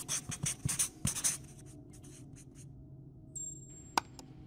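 Marker scratching out handwriting in a quick run of strokes, fading out after about two seconds. A short tone and a sharp click come near the end.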